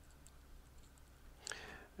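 Faint, scattered light clicks of a small metal pick against greased needle rollers as they are pushed into the bore of a Muncie four-speed countershaft gear, with one sharper, louder sound about a second and a half in.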